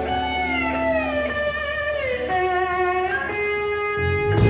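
Electric guitar playing a blues lead line of sustained notes, one gliding down in pitch midway, over a low steady bass underneath.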